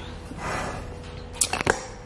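A few sharp clicks and knocks about one and a half seconds in, from a folding clothes drying rack with a metal frame and plastic joints being handled and moved.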